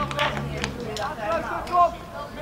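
Shouted calls from voices on and around a football pitch, with a few sharp knocks in the first second.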